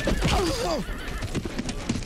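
A horse whinnying in short falling calls, with hooves clattering.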